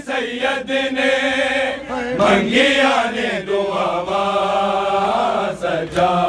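Group of men's voices chanting a noha, a mourning lament for Imam Sajjad, led by reciters with the crowd joining in. Sharp rhythmic slaps of chest-beating (matam) recur about three times a second.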